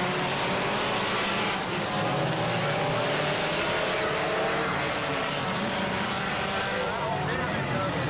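A field of four-cylinder enduro race cars running together around a short oval track, many engines at once in a steady, dense din.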